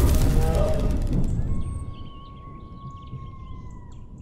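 Sound design of an animated channel-logo sting: a deep booming hit fading out over the first two seconds, then a nature bed of bird-like chirps with a long steady high tone that stops just before the end.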